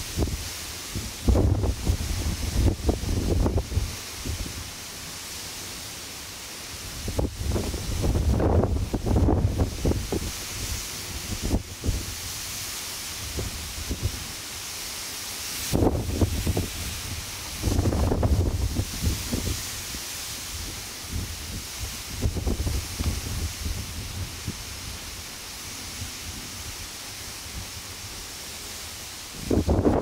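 Wind buffeting the microphone in irregular gusts, about six over the span, each a second or two long, over a steady high hiss.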